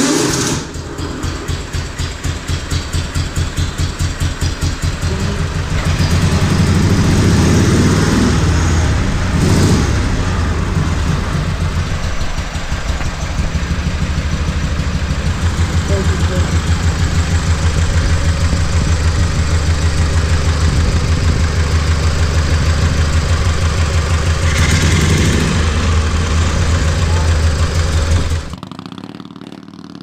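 Vintage Morgan three-wheeler's air-cooled V-twin engine running with a steady, even pulsing beat, revved up briefly a few times. It cuts off sharply near the end.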